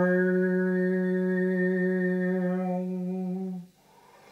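Overtone singing: one long low drone note held steady, with bright overtones sounding above it, breaking off about three and a half seconds in.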